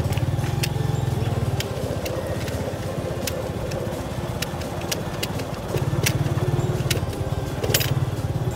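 Motorcycle engine running at low road speed with a strong, even exhaust pulse. It eases off about a second and a half in and picks up again about six seconds in. Scattered sharp clicks and rattles run through it.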